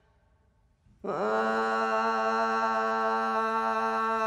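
A man singing a Taomin huaer folk song unaccompanied. After about a second of near silence he slides up into one long held note rich in overtones.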